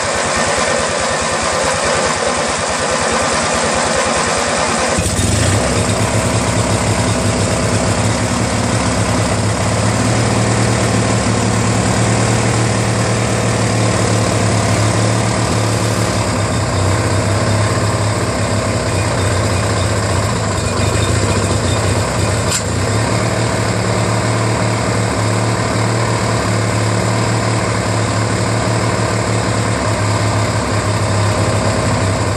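Briggs & Stratton opposed-twin flathead engine on a Murray garden tractor starting up and settling into a steady run about five seconds in, with one sharp pop about two-thirds of the way through. It runs rough even on a freshly cleaned and rebuilt Nikki carburetor; the owner suspects the carburetor, the ignition timing or the valves.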